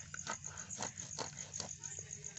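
A blade cutting through a large grass carp, a series of short rasping strokes about every half second, with the thick-scaled fish hard to cut through. A steady high pulsing runs behind.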